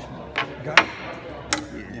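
Metal PTO clutch parts knocking against each other and the steel bench as they are handled: three sharp clicks, the middle one the loudest.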